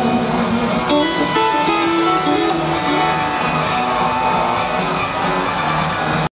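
Live band playing an instrumental passage, with accordion, guitar and drums.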